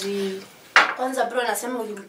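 People talking: a held hum-like vocal sound at the start, then a single sharp clink about three-quarters of a second in, followed by more talking.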